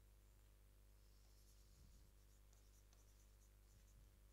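Near silence: faint scratching of a pen writing on an interactive board screen, starting about a second in, over a steady low hum.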